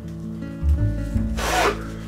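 A disposable glove being pulled onto a hand, with a short rustling rub about one and a half seconds in. Background music with sustained low notes plays throughout.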